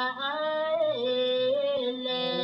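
A high solo voice singing long held notes that slide between pitches, over a steady low drone.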